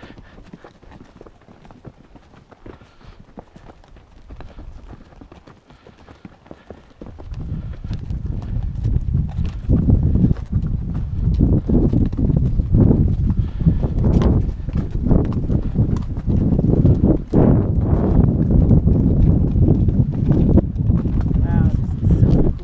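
Hooves of a mule and a horse walking over a rocky granite trail, a steady clip-clop. It is faint at first and turns much louder and heavier about seven seconds in.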